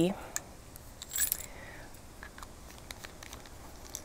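Faint handling sounds of a Speedball lino cutter's metal bits and ferrule: a brief light metallic jingle about a second in, then scattered small clicks.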